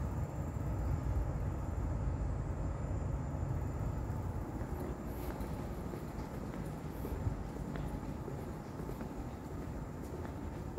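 Steady low rumble of airport interior ambience in a walkway, easing a little after the first few seconds, with a faint thin high whine throughout and a single light click about seven seconds in.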